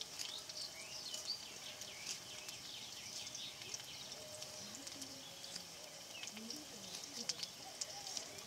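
Faint scattered clicks of a small knife cutting red chillies by hand. Behind them are faint chirps and a faint distant voice.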